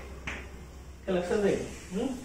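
Chalk writing on a blackboard in a few short strokes with a sharp tap, then a man's brief spoken sound about a second in, which is the loudest part.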